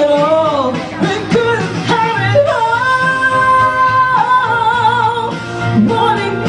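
A woman singing into a handheld microphone over backing music. A few short sung phrases lead into one long held high note, which wavers with vibrato near its end.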